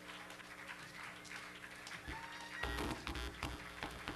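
Quiet live rock band playing: sustained low droning tones with scattered guitar notes and clicks, and a short cluster of louder low hits about three seconds in.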